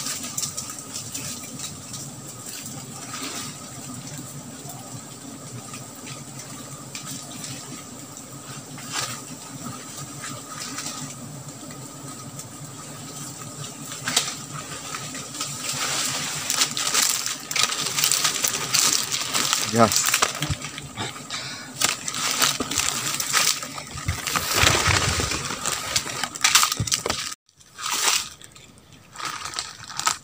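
Leaves and branches rustling and cracking as a wild honeybee nest is worked in a tree, growing busier and louder from about halfway. A steady high drone runs behind it.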